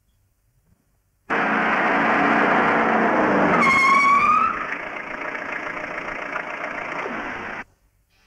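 Old police jeep's engine running as it drives, starting suddenly after a second of silence, with a short high squeal about halfway through. It then settles to a quieter steady idle and cuts off suddenly near the end.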